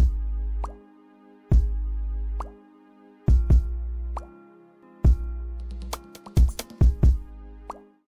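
Outro music: deep bass hits about every 1.7 seconds, sharp clicks and short rising blips over steady held tones, fading out at the end.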